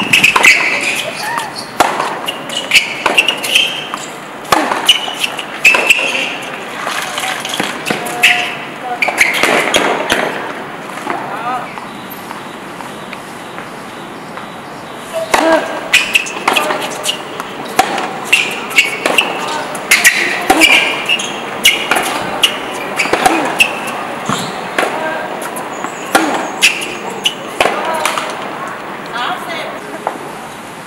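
Tennis rallies on an outdoor hard court: racket strikes and ball bounces at an irregular pace, in two stretches with a lull of a few seconds between them a little before the middle.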